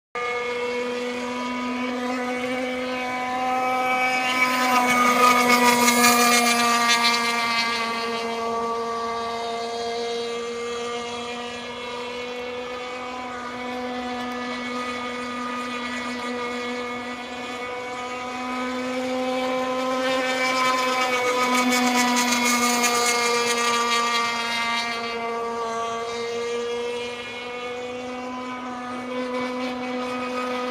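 Stock Zenoah 260 two-stroke petrol engine of a Zippkits Bullitt RC thunderboat running flat out on the water, a steady high buzz. It grows louder twice as the boat passes, about five and twenty-two seconds in, and the pitch bends slightly each time.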